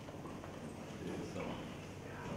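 Low, indistinct voices murmuring in a room, with no clear words.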